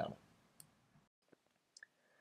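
Near silence in a pause between spoken sentences, broken by a few faint, short clicks.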